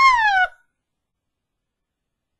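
A dog's single short, high whine that rises and then falls in pitch.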